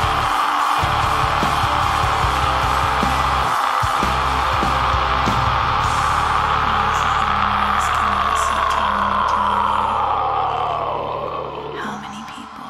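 Atmospheric black metal: one long held harsh scream over distorted guitars and drums. It holds for about ten seconds, then slides down in pitch and fades near the end as the music drops back.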